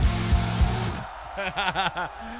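Hard rock song with drums and guitar playing, ending about a second in; a man then breaks into short bursts of laughter.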